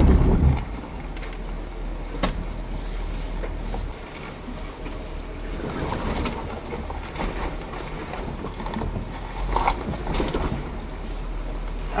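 Jeep Wrangler crawling slowly over a muddy, rocky off-road trail, heard from inside the cab: the engine runs steadily at low speed, with a few short knocks as the Jeep bumps over rocks and ruts.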